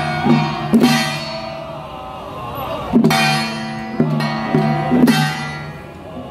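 Ritual music of a Taiwanese xiaofa troupe: held, chant-like pitched voices over beats of an octagonal hand drum, with three sharp strikes that ring on brightly, about a second in, at three seconds and near five seconds.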